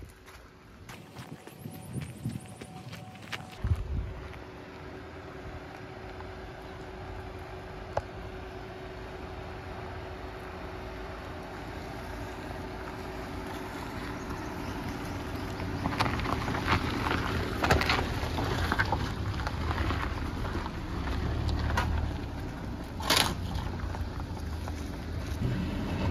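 A Hyundai Grand i10 hatchback drives slowly up a rocky dry riverbed track. Its engine hum grows louder as it approaches, and in the second half its tyres crunch over loose stones and gravel. A sharp knock comes near the end.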